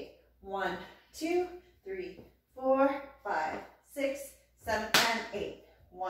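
Mostly a woman counting the beats aloud in time, with one sharp slap about five seconds in: a hand striking the hip as the percussive hit of a flamenco tangos marking step.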